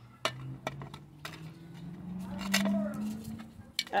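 Small decorative stones clinking lightly against one another and the pot as they are pushed back in over the moss: about half a dozen separate small clicks spread across the few seconds.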